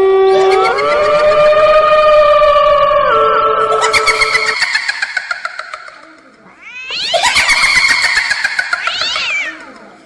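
Horror sound effect of cat-like yowling: layered wailing tones that slide and waver in pitch. They fade almost to nothing about six seconds in, swell up again, and fade out near the end.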